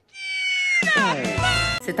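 A single drawn-out cat-like meow, edited in as a comedy sound effect, its pitch sliding down partway through, with a low thump under its second half.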